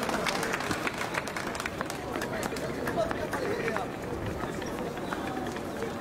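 Small crowd of spectators chatting, with scattered sharp hand claps throughout.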